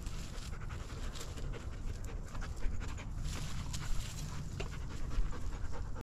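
A young Groenendael Belgian Shepherd dog panting, its breaths coming about two or three a second, with a few short sharp crackles among them.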